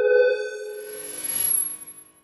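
Electronic logo sting: a bright, pinging tone with many overtones sounds at the start and fades, and a swelling swish builds about a second in and cuts off near the end.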